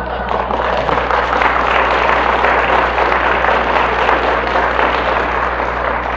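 Audience laughing and applauding: a dense, even clatter of many hands clapping that holds for about six seconds and thins out near the end.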